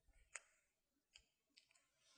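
Near silence broken by a few faint, short clicks: the first and sharpest about a third of a second in, another just over a second in, and two close together near the end.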